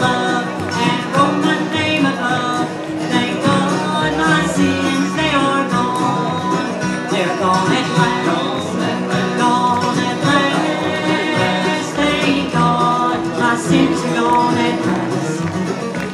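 Live bluegrass band playing a gospel hymn on mandolin, acoustic guitars and upright bass, steady and unbroken.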